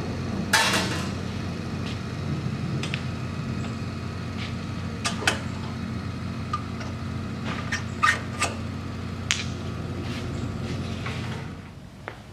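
Steel planishing dies clinking and knocking against the metal tool holders of a Mechammer MarkII as they are pulled out and dropped into place by hand: a scattering of separate sharp clicks and clanks. Under them is a low steady hum, which drops away shortly before the end.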